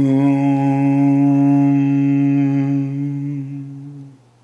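One long chanted 'Aum' (Om) held on a steady low pitch, the open vowel fading into a hummed 'mm' near the end.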